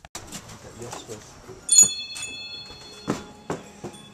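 Knocks and clicks of handling and footsteps while going into a shop; about two seconds in, a sharp metallic jingle whose high bell-like ringing lingers on, as from a bell on the shop door.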